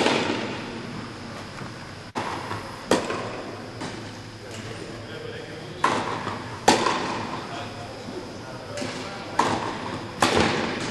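Tennis rally on an indoor court: sharp pops of rackets striking the ball, with softer ball bounces, every second or few, each echoing in the hall. The loudest strikes come at the start and about two-thirds of the way in.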